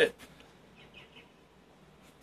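Faint bird chirping: three short high notes about a second in, over quiet background.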